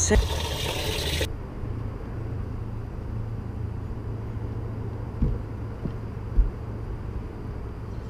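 Water noise in a bass boat's livewell as the bass goes in, a hiss that cuts off suddenly after about a second. Then a steady low hum runs on, with two soft knocks a little after the middle.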